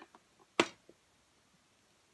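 A single sharp click about half a second in, a small object tapped or set down on the craft table, with a few faint ticks from handling small paper pieces around it.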